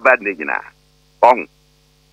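A man speaking in short phrases, with a faint, steady electrical hum underneath that carries on through the pauses.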